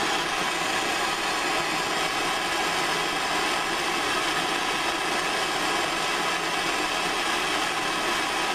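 Handheld MAP gas torch burning, its flame giving a steady, even hiss.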